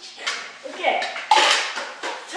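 A child's short falling call, then a sudden sharp clatter on the hard floor about a second and a half in.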